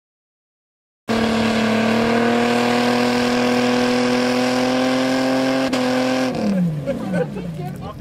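Jeep Wrangler's engine revving hard and held at high revs while the Jeep is bogged in mud, its pitch creeping slowly upward. It cuts in after about a second of silence, and the revs fall away quickly about six seconds in, with voices over the end.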